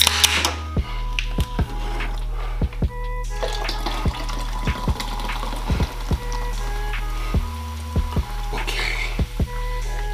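A hip-hop background beat with a steady bass line and regular clicks plays over carbonated soda being poured from two aluminium cans into two glass boot mugs, fizzing as it fills them. There is a short sharp hiss right at the start as the cans are cracked open.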